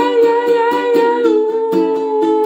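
Ukulele strummed in a steady rhythm, about four strums a second, under a man singing one long held note that steps down slightly past the middle.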